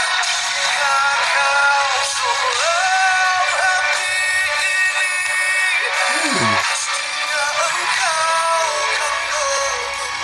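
Music: a male vocalist singing long, wavering notes over an instrumental backing.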